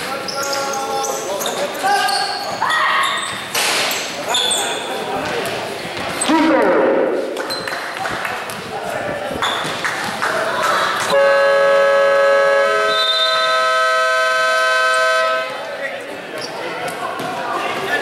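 Gym scoreboard buzzer sounding one steady, loud tone for about four seconds, starting about eleven seconds in and cutting off suddenly: the end-of-game buzzer as the fourth-quarter clock runs out. Before it, voices and a basketball bouncing on the court.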